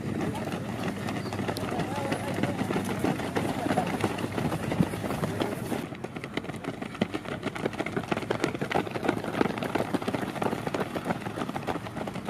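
Footfalls of a pack of runners on a dirt track: many quick, overlapping steps, with people's voices talking and calling behind them. The upper hiss changes abruptly about halfway through.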